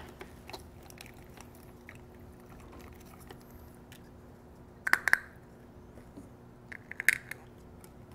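Plastic coral shipping bags being handled in a bucket: faint crinkling and clicks, with two short louder bursts of crackling about five and seven seconds in, over a low steady hum.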